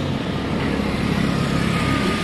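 Steady low background rumble of vehicle noise, with no distinct events.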